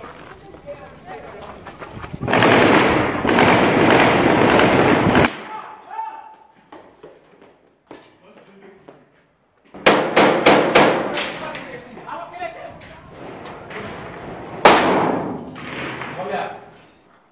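Gunfire in a street battle: about ten seconds in, a rapid burst of several sharp shots within about a second, and a single loud shot near the end, amid men's voices. A few seconds of loud, dense noise come about two seconds in and stop abruptly.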